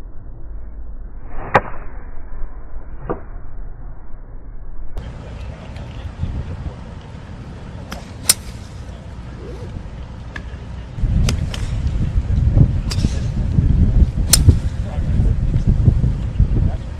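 Golf clubs striking balls on a practice range: two muffled strikes in the first few seconds, then sharper cracks of club on ball about every one to three seconds, the loudest near the end as a 5-wood connects. A low wind rumble on the microphone comes in for the last five seconds.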